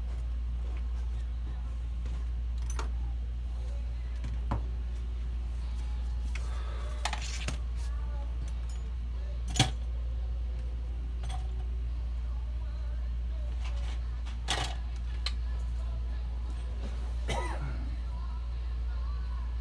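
A steady low hum with scattered clicks and knocks over it; the sharpest knock comes about halfway through.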